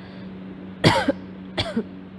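A woman coughs sharply about a second in, then gives a second, smaller cough just over half a second later. A steady low hum runs underneath.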